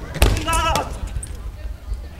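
A sharp smack about a fifth of a second in, then a short, high, wavering shout.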